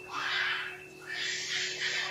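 Two harsh, noisy calls from a macaque, the first short and the second longer, near a second in, over steady background music.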